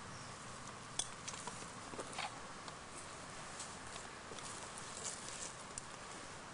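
Faint steady hiss with a few scattered light clicks and rustles, the sharpest click about a second in.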